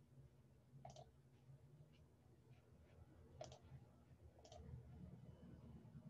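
A few faint, separate computer mouse clicks in near-silent room tone.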